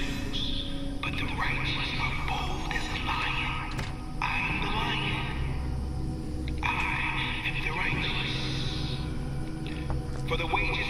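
A preacher's sermon voice delivered in phrases over steady, low background music.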